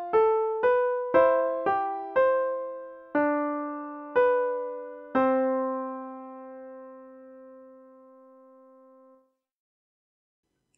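Piano playing the close of a two-voice counterpoint exercise, a moving melody over a cantus firmus: two-note chords struck about twice a second, slowing to once a second, then a final octave on C held about four seconds before it cuts off suddenly.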